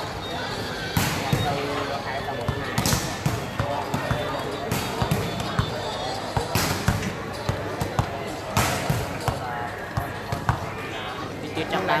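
A volleyball hitting something in quick pairs about every two seconds, over the steady chatter of a crowd.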